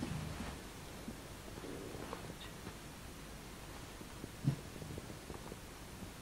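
Faint, low rumble from a replayed home recording, with a swell at the start and a short, louder low burst about four and a half seconds in. The investigator cannot explain it and thinks the household dog growling the likelier of two explanations.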